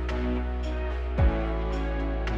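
Background music: held chords over a steady low bass, with a deep bass hit that falls in pitch about a second in.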